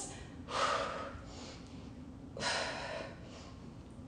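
A woman breathing hard from exertion: two loud, breathy exhalations about two seconds apart.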